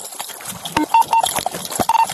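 Audio of police video footage playing: a jumble of clicks, knocks and rustling handling noise, with short high electronic beeps about a second in and again near the end.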